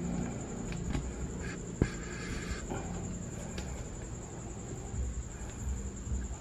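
Steady low hum and hiss with a constant faint high-pitched whine, broken by a few faint ticks and one sharp click just under two seconds in.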